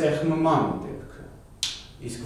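A man speaking Armenian for about a second, then a single short, sharp hissing click about one and a half seconds in.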